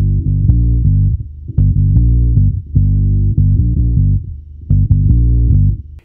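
Electric bass played through an MXR Bass Octave Deluxe pedal with the original signal turned out of the mix, so only the synthesized octave below is heard: a deep, dubby synth-like riff of short plucked notes in phrases with brief pauses.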